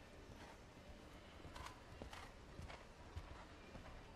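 Faint hoofbeats of a horse cantering on arena sand footing: a handful of irregular soft strikes over a low background.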